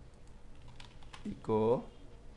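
Typing on a computer keyboard: a scatter of light keystrokes. About one and a half seconds in, a short voiced sound from the typist is the loudest thing.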